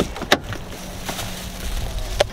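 Car door being unlatched and opened: two sharp clicks a third of a second apart from the handle and latch of a Jaguar's driver door, then a steady low rumble.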